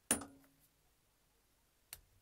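Near silence, broken by one sharp click with a brief low ring just after the start and a faint tick near the end.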